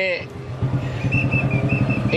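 A steady, low engine hum, with a faint high whine joining about a second in.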